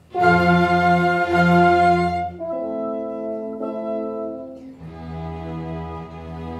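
String orchestra playing held chords: after a brief break a loud full chord comes in, holds for about two seconds, then gives way to softer sustained chords, with another chord entering near the end.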